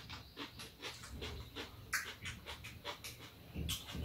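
Eating sounds at close range: an irregular run of soft clicks and smacks from chewing and spoons, several a second.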